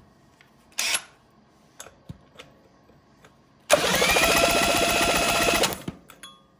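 A short hiss about a second in. Then, near four seconds in, a small motor whirs up quickly to a steady pitch, runs for about two seconds and cuts off abruptly.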